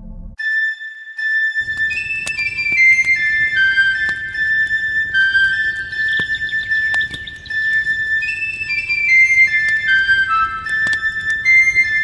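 Background music: a melody of short high notes stepping up and down over one held high note. It begins just after a brief break in the sound.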